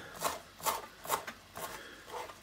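Chef's knife chopping fresh dill on a plastic cutting board: four short knocks, evenly spaced at about two a second.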